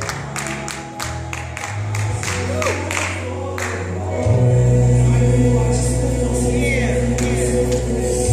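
Gospel music with choir singing over sustained bass notes, and sharp percussion hits in a steady beat through the first half; the bass grows louder about four seconds in.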